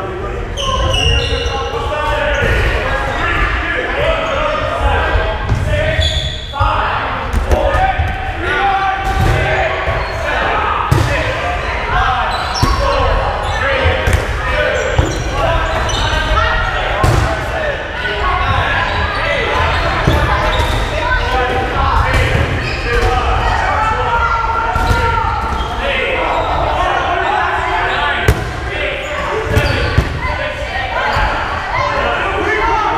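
Dodgeballs repeatedly bouncing on a wooden gym floor and smacking off players, with many sharp hits throughout, amid overlapping shouts and chatter from the players, echoing in a large gymnasium.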